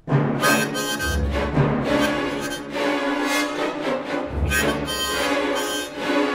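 Small harmonica played in short, broken phrases of reedy chords and notes that follow the rhythm of speech, used as a voice in place of words. Low rumbling swells come in under it about a second in and again just past four seconds.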